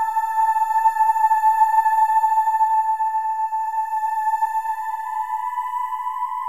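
Background music: a held high chord with no bass and no beat, its notes shifting a little about four seconds in.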